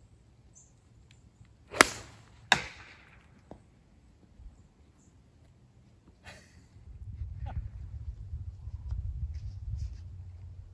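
Golf club striking a ball off the tee: a sharp crack about two seconds in, followed under a second later by a second, slightly softer knock. A low rumble sets in near the end.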